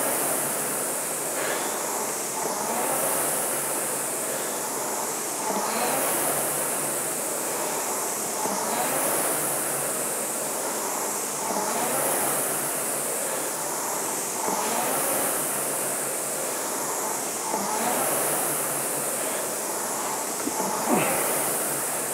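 Concept2 indoor rower's air-resistance flywheel whirring, swelling with each drive stroke and fading on the recovery, about once every three seconds at 20 strokes per minute.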